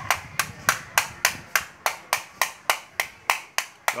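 Toy hammer tapping repeatedly in a quick, even rhythm, about three and a half sharp knocks a second.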